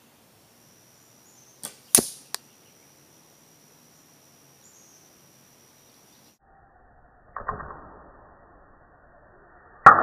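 A recurve bow's string snaps off in the distance, and about a third of a second later a sharp crack follows as the arrow strikes the target beside the microphone, then a small tick. From about six seconds in, the same shot plays back slowed down and muffled: a drawn-out thud, then a louder, deeper impact near the end that fades slowly.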